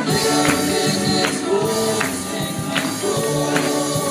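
Gospel song sung live with accompaniment: held, sung notes over a steady beat of sharp percussive hits about every three-quarters of a second.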